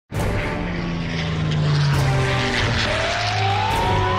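Propeller-plane engine sound effect: a steady droning hum, with music underneath. About three seconds in, a single tone begins and rises steadily in pitch.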